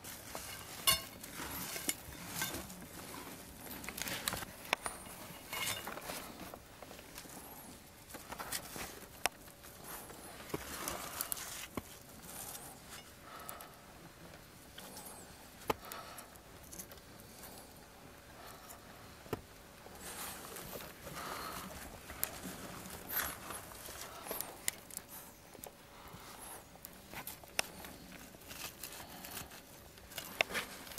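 Irregular knocks, clinks and scrapes of an iron digging bar and shovel working crumbly rock in a mine gallery.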